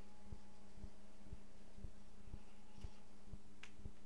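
A low steady hum with a soft low throb about twice a second, and one faint click about three and a half seconds in.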